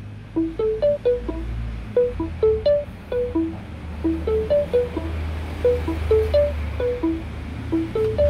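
Seeing AI app's processing sound played from a phone: a soft looping melody of short plucked notes, about three a second, repeating while the app waits to return a scene description, over a steady low hum.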